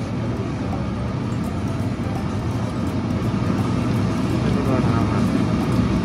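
Franke range hood's exhaust fan running, a steady rush of air drawn through the hood that grows slightly louder over the first few seconds. It pulls air strongly yet is not very loud.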